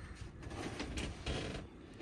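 Light knocks and scraping of a hand feeling around in a sailboat's open bilge under a lifted floorboard, checking the hull for a leak after striking a rock; a sharper knock comes about a second in.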